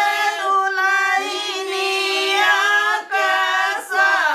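A group of women singing a traditional wedding folk song (geet) together in long held notes, breaking briefly for breath about three seconds in and again near the end.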